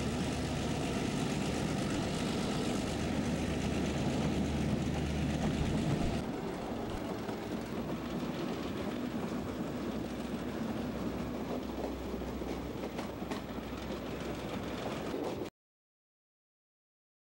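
Diesel passenger train running, heard from the coach window with a steady low engine drone and rail noise. The sound changes abruptly about six seconds in to quieter running with occasional clicks, then cuts off to silence just before the end.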